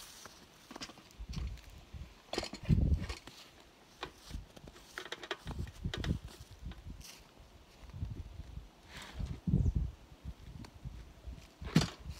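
Footsteps and handling noise as a hive scale is set up: the chain and metal lifting stand clink and knock at irregular moments, with one sharp knock near the end.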